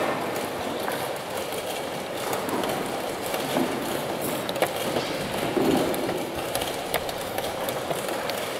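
Steady hubbub of a crowded chess tournament hall, with a few sharp clicks of wooden chess pieces set down on the board and chess clock buttons pressed during fast blitz play.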